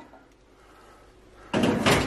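Quiet for about a second and a half, then a sudden loud scraping clatter as a plate carrying a ready-meal tray is slid off a microwave's turntable and lifted out.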